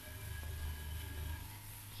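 Faint low hum of a Philips-Miller film recorder's motor running just after being switched on, with a faint steady high tone, under steady hiss. The hum drops away about a second and a half in.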